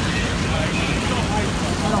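Fire engines running their pumps, a steady low rumble, with faint voices over it.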